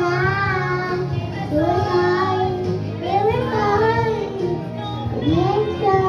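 A young girl singing karaoke over a music backing track, her voice carrying the melody over steady low instrumental notes.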